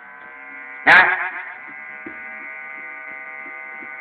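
A steady electrical buzz at one unchanging pitch, with many even overtones. A man briefly says 'nah' over it about a second in.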